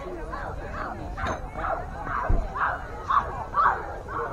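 A small dog yapping in a quick series of short, high barks, about two a second, the loudest ones in the second half.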